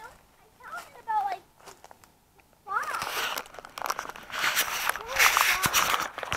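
Rustling and scraping of a hand handling the camera right against its microphone, starting about three seconds in, after a quiet stretch broken by brief faint voice sounds.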